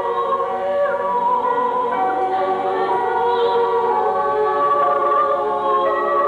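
Mixed choir of male and female voices singing together in harmony, holding long sustained notes.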